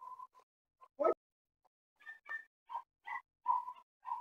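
A dog barking several times in short barks, coming faster in the second half, with one sharper thump about a second in.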